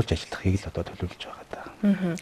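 Speech only: a man talking in a studio interview, with a woman's higher voice starting near the end.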